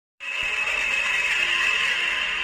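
Soundtrack sound effect under a film's production-logo intro, played on a TV: a steady, dense, grainy hiss that cuts in sharply right at the start.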